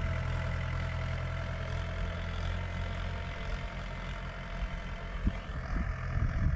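Mahindra 575 tractor's four-cylinder diesel engine running steadily at low revs as it pulls a plank leveller across a ploughed field, growing slightly fainter as the tractor moves away. A few short low thumps come near the end.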